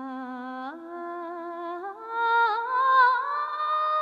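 Wordless held vocal notes, sung or hummed as a slow melody line. The pitch steps up about a second in and again about two seconds in, and the later notes are louder with a slight waver.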